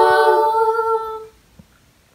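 Young voices holding the final hummed note of an a cappella worship song, which fades out after about a second.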